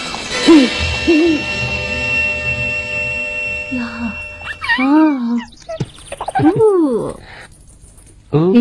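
Background music with long held tones that breaks off about four seconds in. Then a woman's voice makes a few drawn-out cooing 'ooh' sounds that rise and fall in pitch, as if soothing a baby.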